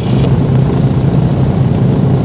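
Douglas DC-3's radial piston engines idling with the propellers turning, heard from inside the cabin as a steady, deep drone.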